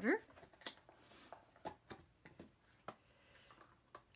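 Ziploc plastic container being opened, its lid unsnapped and set down: a scatter of sharp plastic clicks and taps, about six over a few seconds, with two brief soft rustles between them.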